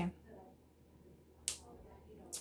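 Quiet handling of a synthetic hair topper as it is put on, with one short, sharp, hissy snap about one and a half seconds in.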